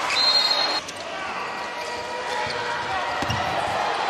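Handball game in an arena: crowd noise with a short high whistle near the start, then, after a sudden drop in level, a quieter crowd and a handball bouncing on the court.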